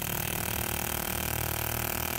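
Fuel injector buzzing steadily as an injector tester pulses its solenoid continuously, with the hiss of carburettor cleaner spraying through it.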